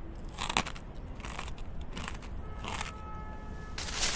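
Sound effects: a few short crackling, hissing bursts, with faint steady electronic tones coming in about halfway through.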